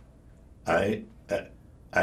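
Speech only: after a short pause, an elderly man begins a hesitant answer, 'I, uh'.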